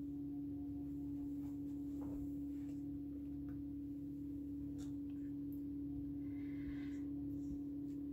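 A steady low electrical hum, with a few faint taps and scrapes as a wet painted canvas is turned around on the work table.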